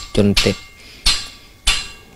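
Two sharp knocks, like hammer strikes, about half a second apart, each ringing briefly, following a few spoken words.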